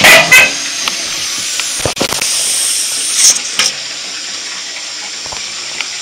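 Open radiator bleed valve hissing and spitting as gas and water escape from the radiator, with louder spurts at the start and about three seconds in and a sharp click near two seconds. The gas is what the owner takes for hydrogen from rusting steel inside the closed heating circuit.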